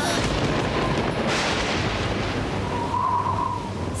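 Storm sound effects: heavy rain and wind with a deep rumble underneath. A gust swells about a second in, and a brief wavering wind whistle comes near the end.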